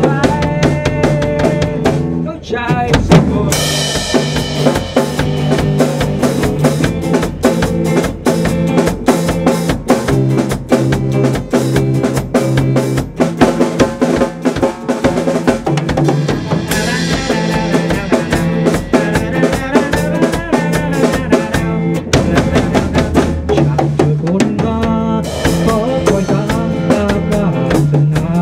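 A drum kit and an electric guitar playing a song together live, with steady kick, snare and rimshot strokes under sustained guitar notes. Cymbal crashes ring out a few seconds in and again a little past halfway.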